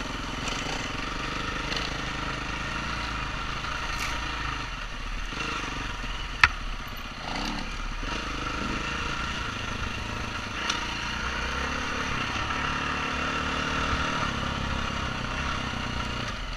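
A 2016 KTM 350 EXC-F single-cylinder four-stroke dirt bike running steadily under way on a dirt trail, heard from a camera mounted on the rider, with rushing noise over it. A sharp knock cuts through about six and a half seconds in.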